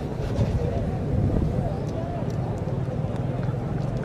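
Crowd of spectators murmuring and chattering, scattered voices with no single one standing out, over a steady low rumble.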